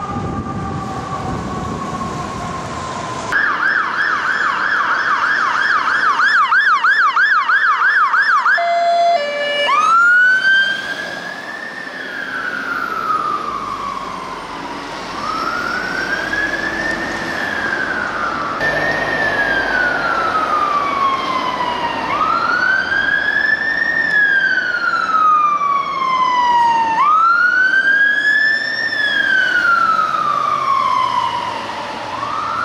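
Fire engine sirens. First a siren slowly falling in pitch over engine rumble on an FDNY ladder truck; then, about three seconds in, a British fire engine's electronic siren on a fast yelp, which about nine seconds in switches after a few short stepped tones to a slow wail rising and falling about every five seconds.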